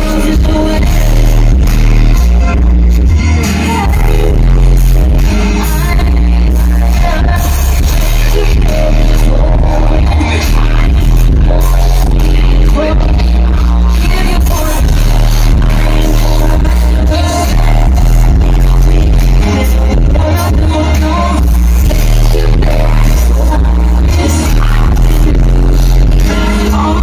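Live R&B song played loud through a concert sound system, with a heavy bass line stepping from note to note and a woman's vocals over it.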